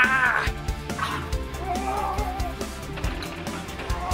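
Music playing under short, strained yelping cries from a man in a scuffle: one near the start and a fainter one about halfway through.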